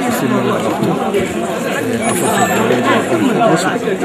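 Speech only: a man talking steadily, with other voices chattering behind him.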